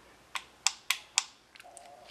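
Four sharp metallic clicks about a quarter second apart from the trigger of an AR-15 lower receiver being worked by hand with the selector on safe, checking that the hammer first moves downward, the sign of a properly adjusted, safe trigger.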